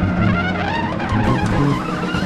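Live electric jazz improvisation: trumpet, electric guitar, bass guitar and drums playing together, with sliding, bending high lines over steady low bass notes.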